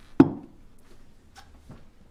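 A single solid knock of tableware set down on a cloth-covered breakfast table, with a short ring, followed by a few faint clinks and clicks.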